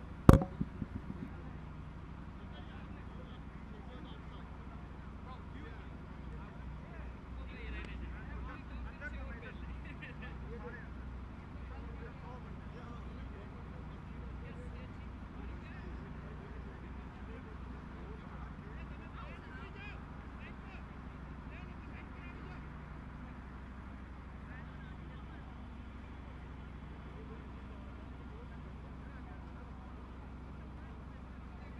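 Faint, distant voices of players talking on a cricket field over a steady low hum, with one sharp knock right at the start that is the loudest sound.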